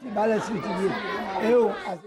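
Speech only: a man talking in an untranslated language, with chatter from other voices behind him.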